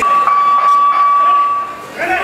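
A single steady electronic beep at one pitch, lasting nearly two seconds and then cutting off, with the crowd noise and music much fainter underneath it.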